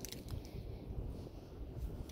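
Low, uneven rumble of wind on the microphone and sea by the shore, with a few faint clicks just after the start.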